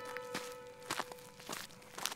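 Footsteps on gravel, about six quick steps, over a soft held music note.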